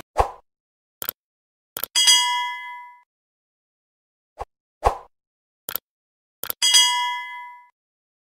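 Synthetic sound effects: a few short mouse-like clicks, then a bright ringing chime that fades over about a second. The pattern comes twice, about four and a half seconds apart.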